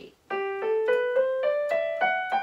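Electronic keyboard playing a G major scale upward from G, one note at a time in even steps, about four notes a second.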